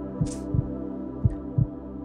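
Background music: held, sustained chords over a soft, steady low beat, about three thumps a second.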